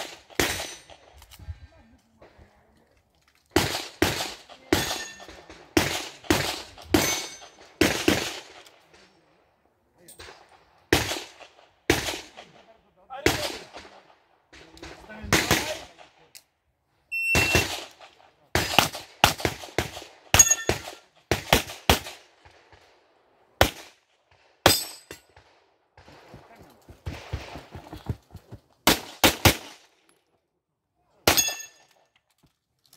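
Pistol shots during an IPSC practical-shooting course of fire, coming in quick pairs and short strings with pauses between. A few shots are followed by a short metallic ping, typical of steel targets being hit.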